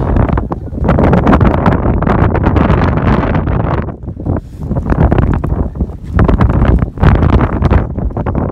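Strong wind buffeting the microphone in gusts, a heavy low rumble with brief lulls about halfway through and shortly before the end.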